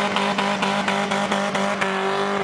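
Subaru EJ202 flat-four engine in a ZAZ-968M Zaporozhets, held at high, steady revs as the car drives by under power.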